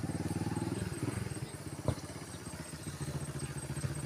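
A small engine running steadily nearby, with fast, even firing pulses, growing fainter after about a second and a half. One sharp knock sounds just before two seconds in.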